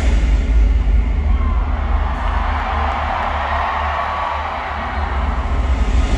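Live concert music in an arena, recorded from the crowd: a loud, bass-heavy instrumental stretch with no vocals. Crowd noise swells over it in the middle.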